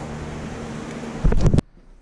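Steady low background noise, then a brief loud low rumble of microphone handling or wind noise about a second and a quarter in, which cuts off suddenly.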